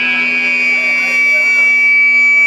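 Electric guitar and amplifier on a live stage: a steady high-pitched feedback whine held over a low amp drone, with faint voices underneath.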